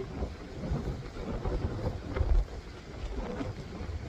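Wind buffeting the microphone, a low rumble that comes and goes in gusts, strongest about halfway through.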